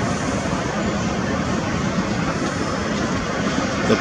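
Steady city street noise: a constant rush of traffic with no single vehicle rising or falling out of it.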